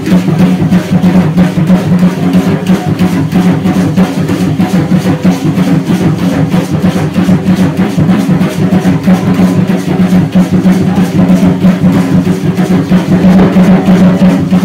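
Fast, steady drumming accompanying Aztec-style danza dancers, one continuous driving beat.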